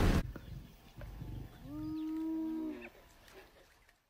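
Buffalo calf bawling once, a long, nearly level call of about a second, the distress call of a calf held by a lioness.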